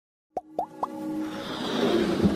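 Three quick plops about a quarter second apart, each a short upward blip, followed by a swelling musical build-up: the sound design of an animated logo intro.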